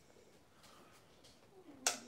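A single sharp click of a light switch being turned off, near the end, after a stretch of faint room tone.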